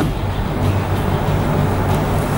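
Steady background drone: a low hum with an even noisy hiss over it.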